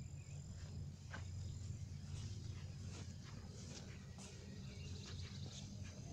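Quiet outdoor garden ambience: soft, irregular footsteps and rustling on grass as someone walks with the camera, over a low steady rumble. A thin, high insect trill runs through the first two seconds, then stops.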